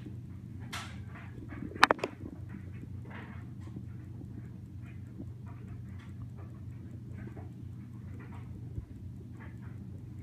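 A sharp double knock about two seconds in, over a steady low hum and faint, scattered soft sounds.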